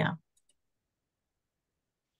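A woman's voice trailing off, then two faint clicks about half a second in, of the kind made when a presentation slide is advanced, followed by dead silence.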